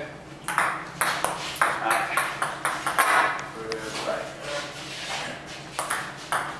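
Table tennis rally: the celluloid ball clicking off rubber paddles and bouncing on the table in a quick, steady series of sharp ticks, about two to three a second.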